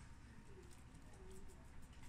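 Near silence: a faint background hush with a few faint, short tones.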